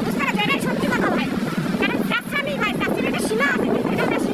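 A person's voice talking over steady low background noise.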